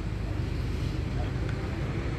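A steady low rumble of vehicle noise.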